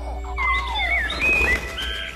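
Movie soundtrack excerpt: background music under a run of high, gliding chirps that start about half a second in and rise and fall several times.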